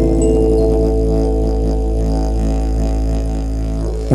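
Live folk music without voice: a steady low didgeridoo drone under held instrumental notes that change pitch slowly.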